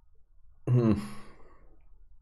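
A man sighs once, a short voiced exhale starting about two-thirds of a second in and trailing off into breath.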